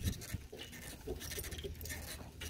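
Horse pulling a two-wheeled driving cart over an arena's sand: irregular soft footfalls and knocks from the harness and cart over a steady low rumble, with a few brief faint animal-like sounds in the middle.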